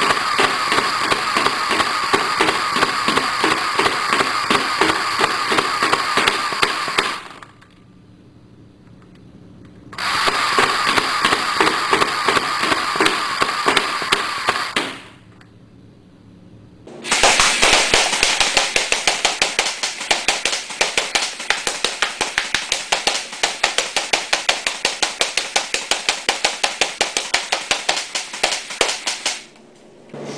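Crosman Pulse M70 fully automatic airsoft gun firing plastic BBs in three long bursts of rapid, evenly spaced clicks. It pauses briefly after about seven seconds and again after about fifteen, and the last burst runs about twelve seconds. A steady whine sounds under the first two bursts.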